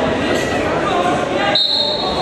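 Spectators' voices and shouts echoing in a large gymnasium, with a thin high steady tone starting about one and a half seconds in.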